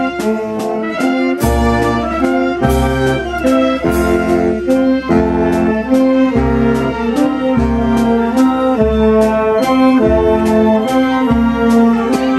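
Wind band of saxophones and French horns playing a tune in full chords over a bass line that changes note about once a second, with a steady beat.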